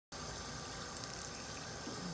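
Steady rush of water being pumped out of an ice tank by a Rule 3700 bilge pump and splashing onto pavement.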